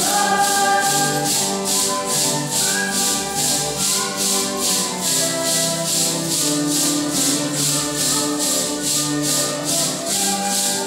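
A group of voices singing a Santo Daime hymn together, in held notes, over maracas shaken in a steady beat of about three strokes a second.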